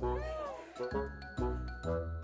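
Background music with a steady bass beat. Near the start a single meow rises and falls over about half a second.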